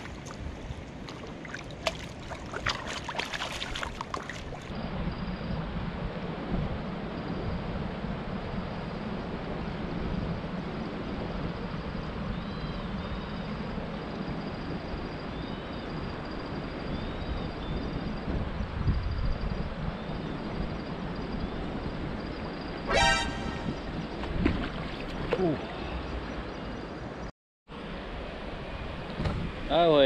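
A fish thrashing in a landing net at the water's surface, with sharp splashes over the first few seconds; then the steady wash of river water, with a brief horn-like toot about three-quarters of the way through.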